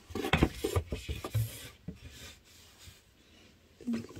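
Cardboard storage boxes scraping and rubbing against each other as they are slid out and moved, in a run of short scrapes over the first two seconds, fainter after.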